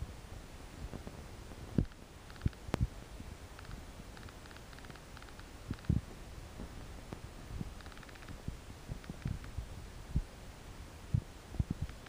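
Quiet room tone inside a large church, with scattered soft low thumps and a few faint ticks.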